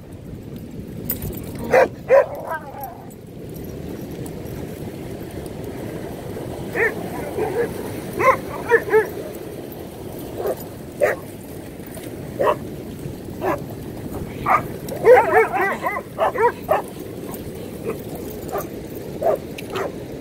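Several dogs barking and yipping in play, short calls scattered throughout with a quick run of yips about fifteen seconds in, over the steady wash of ocean surf.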